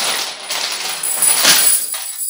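Metal chains clinking and rattling against a wooden floor, with a sharper clank about one and a half seconds in.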